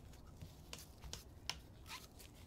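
A few faint, sparse clicks and taps from gloved hands handling small items on a tabletop, the sharpest about one and a half seconds in.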